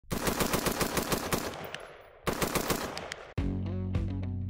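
Rapid fire from an AR-style rifle: two quick strings of shots at about nine a second, each about a second long, with an echo trailing off after each. Strummed guitar music comes in near the end.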